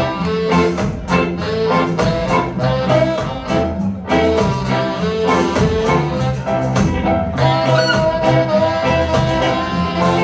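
Live ska band playing an instrumental passage: two saxophones play held notes over electric guitar, upright bass and drums keeping a steady beat.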